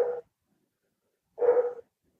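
A dog whimpering twice: short, steady-pitched high cries about a second and a half apart.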